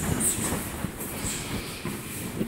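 Irregular low thuds and shuffling from karate sparring: bare feet on foam puzzle mats and blows landing on gis, over a steady rumble, with a few brief swishes.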